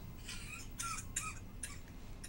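A patient's short, faint coughs, about four in quick succession, set off by topical lidocaine injected through the cricothyroid membrane into the trachea.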